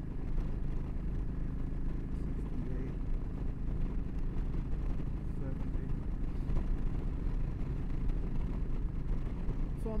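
Yamaha V Star 1300's V-twin engine running steadily at a highway cruise of about 70 mph in fifth gear, under a steady rush of wind turbulence and road noise.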